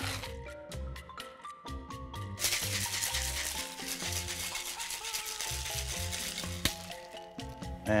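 Background music, with crushed ice rattling in a metal cocktail shaker tin as a drink is shaken for several seconds.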